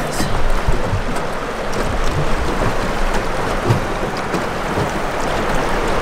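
Steady rushing and splashing of fast river current against a small jon boat's hull, with a few short low knocks.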